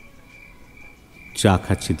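Crickets chirping as a steady, high-pitched trill in short repeated pulses, under a man's narrating voice that comes in about one and a half seconds in.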